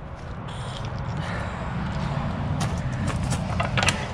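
Vehicle engine idling, a steady low rumble, with rustling and a few light clicks and knocks in the second half.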